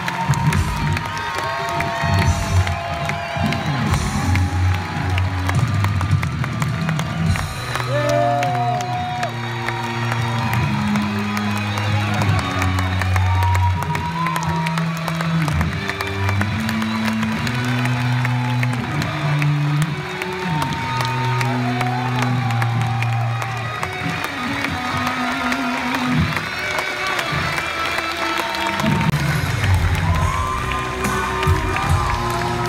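Loud music from a live stage show's sound system, with a large audience cheering and shouting over it. Its bass line moves in held notes that change about once a second.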